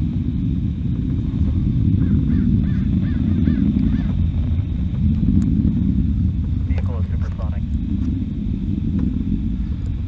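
Distant rocket engine noise from an ascending Firefly Alpha: a steady low rumble that swells and eases a little.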